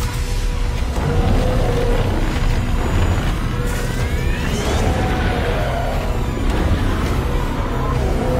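Dramatic soundtrack music over a continuous deep rumble, the sound effect of radiation flooding a containment chamber, with a rising whine near the middle.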